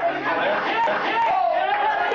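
Many voices at once: a church congregation praying aloud together, their words overlapping without a break.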